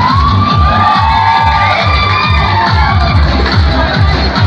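Loud dance music with a steady bass beat, with a crowd cheering and shouting over it.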